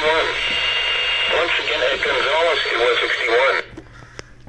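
NOAA Weather Radio broadcast voice playing through a Reecom weather alert radio's small speaker, over a steady hiss of static; the sound cuts off suddenly near the end.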